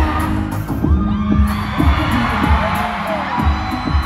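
A K-pop song played live through a concert hall's PA and recorded from the audience: a heavy, regular bass beat with sliding pitch lines above it.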